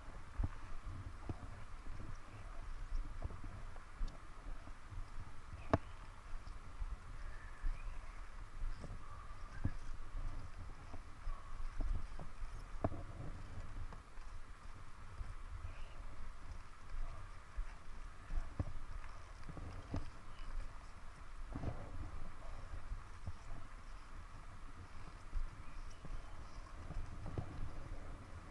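Ski boots crunching and ski pole tips planting in packed snow during a walk along a bootpack: irregular sharp knocks and crunches, with a steady low wind rumble on the microphone.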